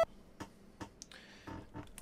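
Faint, scattered clicks of buttons and keys being pressed on an OP-Z synthesizer and keyboard controller, about five short taps over a quiet room.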